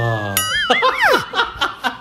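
People laughing. Before it, a man's long, low, drawn-out vocal sound ends about half a second in.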